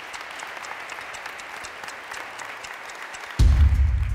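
A group clapping and applauding. Near the end, a sudden deep boom from the background music cuts in over it.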